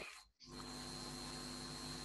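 Faint steady electrical hum and hiss of the recording's background noise, with a thin high whine. It cuts in about half a second in after a brief gap of near silence.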